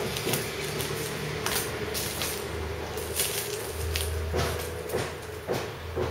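Thin plastic shrink-wrap being torn and peeled off a cardboard phone box by hand: a series of crinkles and short rips, with the box rubbing against the fingers.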